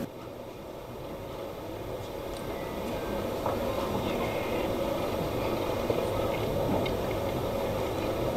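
Steady low background noise of a large hall, slowly growing a little louder, with a few faint clicks.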